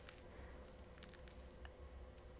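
Near silence: room tone with a faint steady hum and a few soft, wet ticks from a makeup brush spreading charcoal clay mask on the skin.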